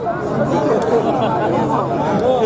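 Speech only: several voices talking over one another.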